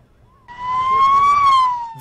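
An emergency vehicle siren wailing, starting about half a second in. It rises slowly in pitch, then starts to fall.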